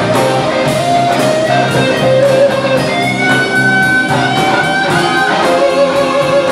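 Live blues-rock band playing an instrumental passage: electric guitar with long, bending notes over drums and bass. Just past the halfway point one high guitar note is held for about a second.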